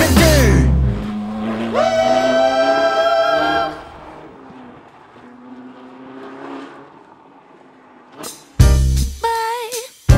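Sports car engine at high revs as it drives past on a gravel stage: a held note that climbs briefly and then stays steady for about two seconds, then drops away to faint outdoor noise. Music plays at the start and comes back near the end.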